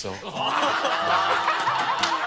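Several men laughing loudly together, many overlapping laughs at once.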